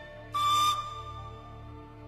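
Pan flute sounding a breathy attack, then holding a single high note that slowly fades, over soft sustained orchestral accompaniment.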